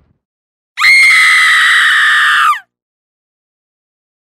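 A single high-pitched scream sound effect, held for almost two seconds and dropping in pitch just before it cuts off.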